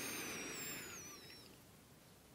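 Faint high whistles, several at once, gliding down in pitch for about a second and a half, over a faint background that fades away.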